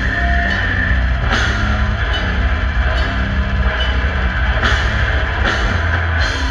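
Brutal death metal band playing live through a festival PA, heard from within the crowd: distorted electric guitars over a dense, heavy drum kit, with cymbal crashes about a second in and again near the end.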